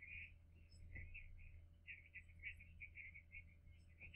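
Near silence: faint, tinny dialogue leaking from earphones, heard only as thin high chatter, over a low steady hum.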